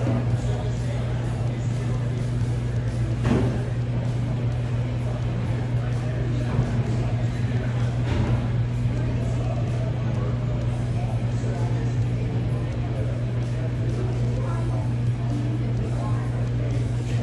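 A steady low hum throughout, with quiet background music, and a few faint clicks about three and eight seconds in.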